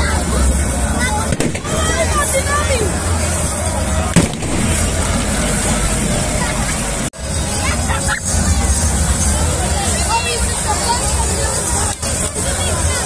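Many voices shouting and calling over one another, with music underneath. A single sharp bang comes about four seconds in.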